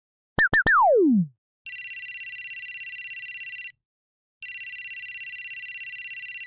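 A sound effect of three quick chirps, the last one sliding steeply down in pitch like a boing. Then a telephone ringing: two trilling rings of about two seconds each, with a short pause between them.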